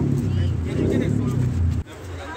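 Street noise: a loud low rumble of traffic with voices of the surrounding crowd, cutting off abruptly near the end.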